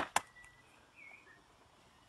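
Two sharp smacks about a fifth of a second apart, followed by a few faint bird chirps.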